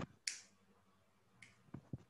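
A few faint, short clicks with a brief hiss just after the start and a weaker one later.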